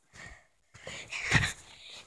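A person breathing close to the microphone: a short breathy exhalation near the start, then a longer, louder one about a second in.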